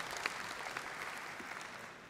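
Audience applause: a steady patter of many hands clapping that thins out and fades near the end.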